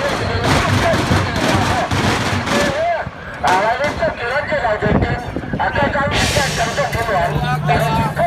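Crowd of people talking and calling out, with sharp bangs of firecrackers scattered through, two of them louder about three and a half and five seconds in.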